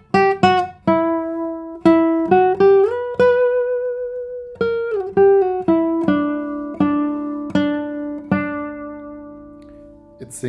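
The 2022 Adrian Heinzelmann 65 cm nylon-string classical guitar played solo. It plays a slow, lyrical single-note melody with a few slurred notes and one long held note. In the second half a low bass note rings on under the melody and fades away near the end.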